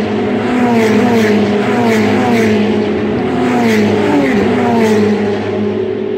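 Race car engines on the circuit, loud and continuous, their pitch falling again and again about every half second over a steady lower hum.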